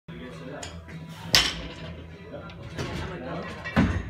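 Gym clatter: a sharp metallic clank about a third of the way in, then a loaded barbell set down on the floor near the end with a heavy thud and clank of its plates. Background voices and music run underneath.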